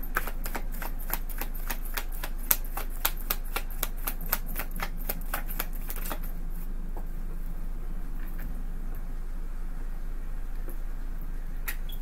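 A tarot deck being shuffled by hand: a quick, even run of card slaps, about four a second, for some six seconds, then only a few scattered ones.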